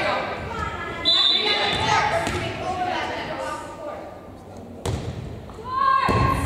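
A short referee's whistle blast about a second in, signalling the serve, over the talking of players and spectators in a gym hall. Near the end a single sharp smack as the volleyball is served.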